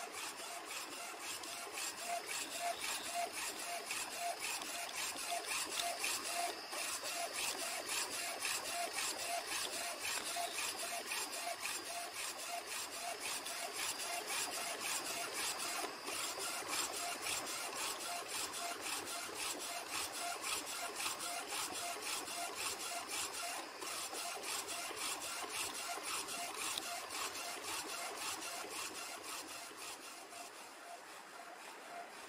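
Small UV flatbed printer running a print job on wooden golf tees: the printhead carriage shuttles over the bed with a steady mechanical whir and fine rapid ticking. A short pitched pulse repeats about two to three times a second.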